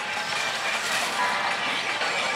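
Steady din of a pachislot hall: the noise of many slot machines running, mixed with machine music and effects.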